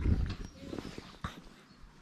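A brief animal call amid outdoor background, with a low rumble in the first half second that fades, and a few sharp clicks about a second in.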